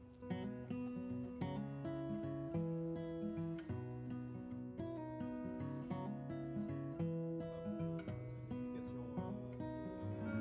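Background music: a plucked acoustic guitar tune with a melody over bass notes.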